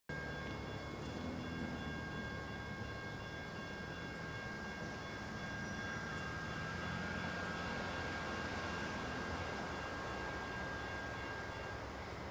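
Outdoor background sound: a steady low rumble with several faint, steady high-pitched tones over it that stop just before the end.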